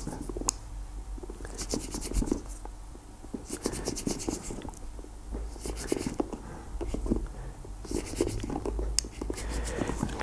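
A micro screwdriver tip scraping inside the eyelet holes of a leather shoe, picking out old polish softened by solvent. It comes as several short bouts of fine, fast scratching.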